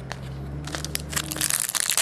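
Foil wrapper of a baseball card pack crinkling as it is opened by hand. A dense crackle starts about half a second in and thickens toward the end.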